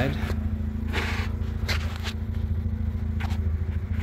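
Mazda RX-8's two-rotor Wankel rotary engine idling steadily through an aftermarket exhaust, left running to warm up. A couple of short rustles come about one and two seconds in.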